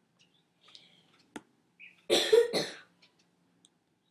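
A person coughing twice in quick succession about two seconds in.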